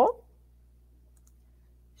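A couple of faint clicks about half a second in, typical of a computer mouse, against an otherwise near-silent room.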